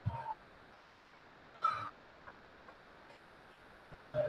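Low murmur of a busy exhibition hall, with two brief vocal sounds: one right at the start and another a little before halfway.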